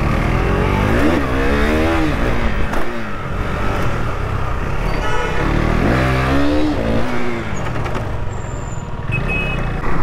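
KTM RC 390's single-cylinder engine pulling the bike away and accelerating. Its pitch rises twice through the gears, about a second in and again around the middle, over steady road noise.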